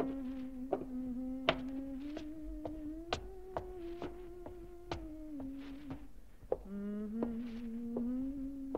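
A low buzzing drone whose pitch slowly wanders up and down, with sharp taps at irregular intervals of about half a second to a second. The buzz breaks off about six seconds in and starts again half a second later at a lower pitch, then rises.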